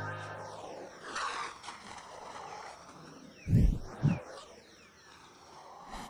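The tail end of an electronic pop track, heavily panned and phased: the music fades into a swirling, sweeping hiss. Past the middle, two deep low thumps about half a second apart stand out as the loudest sounds.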